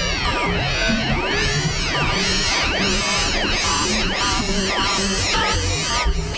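Experimental electronic noise music: many overlapping swooping tones rise and fall in arcs, a new arc about every second, over a choppy low drone.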